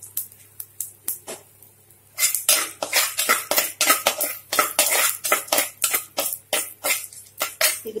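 Slotted steel spatula stirring and scraping a tempering of dal, mustard seeds and dried red chillies in a clay pot: a few scattered clicks, then from about two seconds in a rapid, irregular run of sharp clicks and scrapes.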